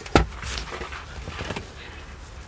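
A sharp knock, then a few fainter clicks and rustles: hands handling the interior trim of a junked car.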